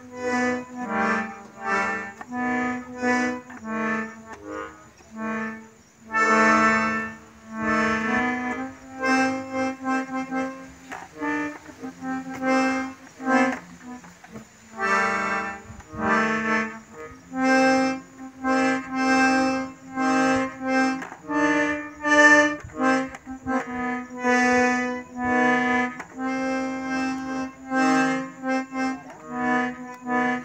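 A piano accordion played solo: a tune of short, rhythmic chords and melody notes over a recurring bass note.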